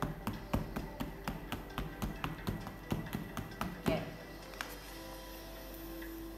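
Quick taps of a yellow oil pastel dotting onto drawing paper, about four a second, stopping about four seconds in. Soft background music with held tones runs underneath.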